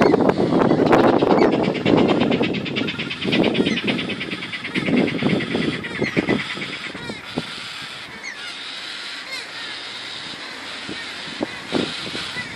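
Traffic: a passing vehicle, loudest in the first half and fading off. Over it, birds call: a fast high rattling trill from about a second in, lasting about three seconds, and a few short chirps later on.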